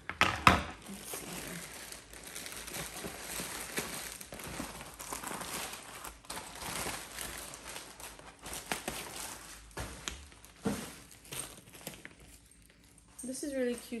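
Thin plastic packaging bag crinkling and rustling as a leather tote is pulled out of it, with a sharp knock about half a second in. The rustling dies down near the end.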